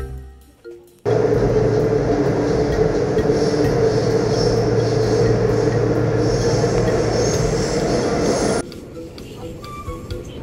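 Subway train running, heard from inside the car: a loud steady rumble with a constant hum. It starts about a second in and cuts off suddenly near the end, with light background music throughout.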